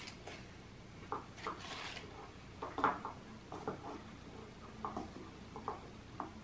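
Spoons scraping and tapping in small cups, with wax paper rustling: a handful of faint, scattered clicks and scrapes.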